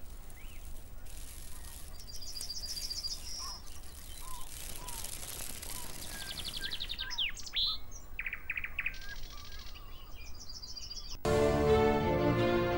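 Birds chirping and trilling, several short high trills and chirps over a steady low background noise. Music cuts in abruptly near the end.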